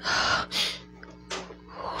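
A man's heavy, gasping breaths close on a studio microphone: two long breaths in the first second and a shorter one about 1.3 seconds in. They are acted as the laboured breathing of a character in pain in a hospital bed.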